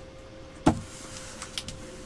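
A cardboard box set down on a desk mat: one sharp thump about a third of the way in, followed by a few light knocks and clicks as it is handled into place.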